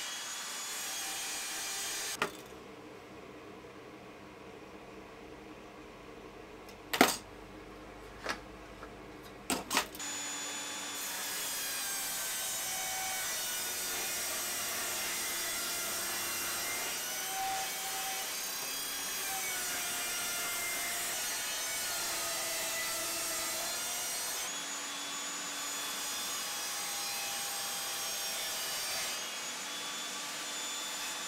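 Evolution Rage 5-S table saw cutting plywood sheet along the fence. The first third is quieter, with a few sharp knocks, then the saw cuts steadily for most of the rest.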